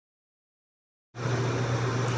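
Dead silence for about a second, then a room air conditioner's steady running noise cuts in suddenly: a low hum under an even hiss. The AC is so loud in the room.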